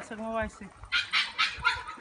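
Dog vocalising: a short pitched note that falls and then holds, followed about a second in by a quick run of short, sharp barks or yips.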